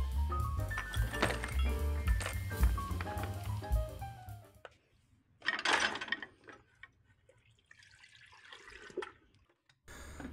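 Background music with a steady beat, which cuts off about halfway through. Then a short splash and slosh of liquid as a small tub of rusty bolts is lowered into a bucket of Evapo-Rust rust remover, with a fainter slosh near the end.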